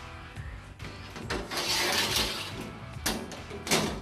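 A long steel bar scraped across steel sheet on the floor for about a second, then two sharp clicks near the end, over background music.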